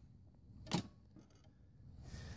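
A single sharp click a little before the middle, then a few faint ticks, over near silence: a handle-adjustment knob on a Kobalt 80V mower clipping back into place.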